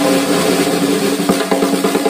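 Ludwig 6.5x14 Supraphonic snare drum, fitted with a Remo Emperor X head and Canopus wide snare wires and close-miked, played with sticks in a loud continuous roll. The roll turns into quick separate strokes in the second half, over a steady ring from the drum. The player finds it cool but thinks it should have a little more throat.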